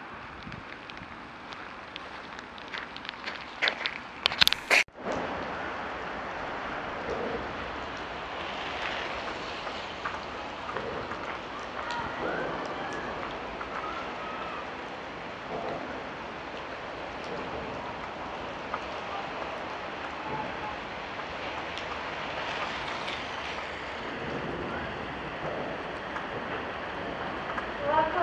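Rain falling, a steady hiss, with a few sharp clicks and knocks about four to five seconds in.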